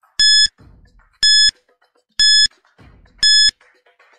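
Countdown-timer beeps: four short, identical electronic beeps, one a second, counting down the seconds of a five-second answer timer.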